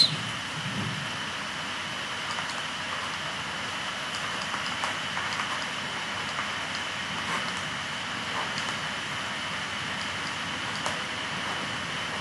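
Steady hiss with a faint high steady whine, and faint, scattered light ticks from a stylus writing on a tablet.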